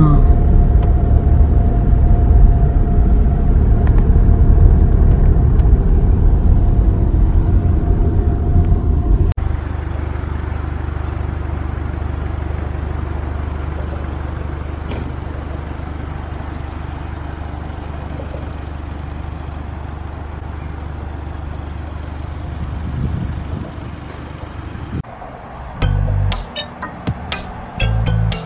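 Car cabin noise while driving slowly: a steady low engine and road rumble with a held tone. About nine seconds in it cuts off suddenly and gives way to a quieter steady low rumble.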